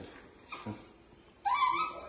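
Small dog whining: a loud, high whine starting about one and a half seconds in, rising in pitch.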